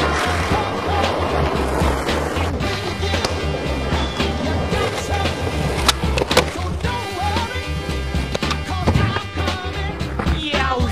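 Music with a steady bass beat laid over skateboard sounds: wheels rolling on ramps and concrete, with a couple of sharp board cracks from a trick around six seconds in.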